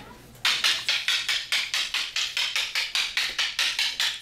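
Wooden fighting sticks clacking together in rapid, even strikes, about five a second, starting about half a second in.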